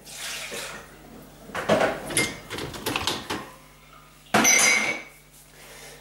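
A ceramic mug is lifted out of a dishwasher's wire rack and the water caught in its upturned base is tipped out, with clinks of china and rattles of the rack. About four seconds in comes a louder, ringing knock of the mug being handled or set down.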